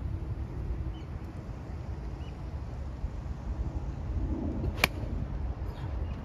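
A golf iron strikes a ball off a driving-range mat: one sharp crack of impact nearly five seconds in, over a steady low rumble of background noise.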